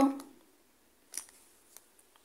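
Faint, scattered clicks and light rustles of metal-framed resin pendants and their cords being handled, the clearest click about a second in.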